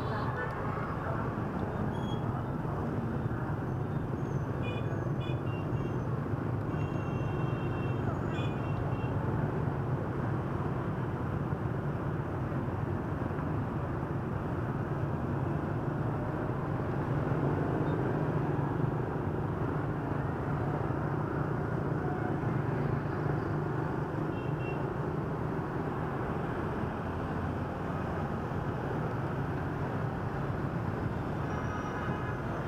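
Dense street traffic of motorbikes and a bus, heard from among the moving traffic: a steady engine and road rumble with wind. A few short, high horn beeps sound between about two and nine seconds in, and once more about twenty-five seconds in.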